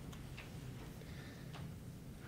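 A few faint, separate clicks from the lectern laptop as it is used to advance a presentation slide, over a steady low room hum.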